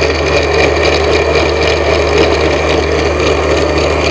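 Small electric countertop blender running steadily, grinding falsa berries in a little water into pulp for falsa sharbat.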